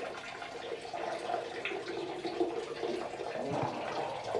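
A man urinating into a toilet: a steady stream splashing into water.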